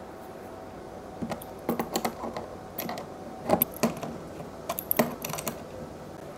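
Scattered light clicks and small clatters of metal and plastic as test leads and terminal hardware are handled at the terminals of a 51.2 V lithium iron phosphate battery.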